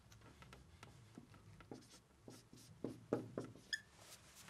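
Dry-erase marker writing on a whiteboard: faint short strokes, a few louder ones in the second half.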